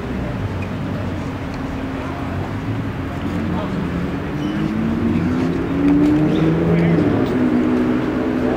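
A car engine running at low revs with a steady low rumble; from about halfway its note slowly rises in pitch and gets louder toward the end.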